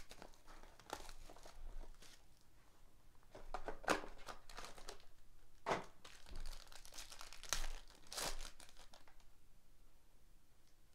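Plastic wrapping and a foil trading-card pack crinkling and tearing in a series of short rustles as the pack is torn open.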